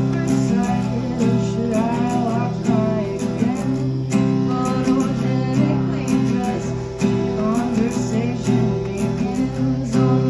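Acoustic guitar strummed in chords with an electric bass guitar underneath, and a woman singing in short phrases over it.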